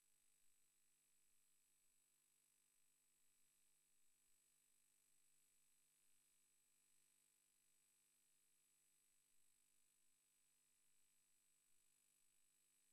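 Near silence: only a faint steady hiss with a thin high-pitched tone.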